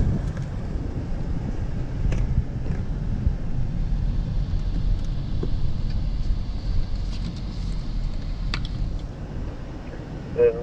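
A car driving at speed with a side window open: steady low road and wind rumble, with a couple of faint clicks.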